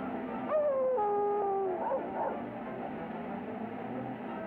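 Cartoon dog's whining howl: one long falling wail starting about half a second in, dropping in two steps and held for over a second, followed by two short cries, over background music.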